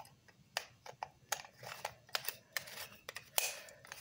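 Small, irregular clicks and taps of a plastic flashlight and its batteries being handled as the batteries are fitted.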